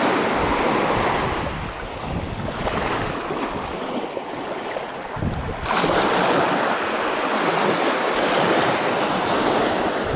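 Small waves washing in over a sandy beach at the water's edge, with wind on the microphone; the wash grows louder about halfway through.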